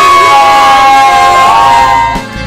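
A small group of voices, adults and a child, cheering together in one long, drawn-out shout, held on high notes and cut off sharply near the end.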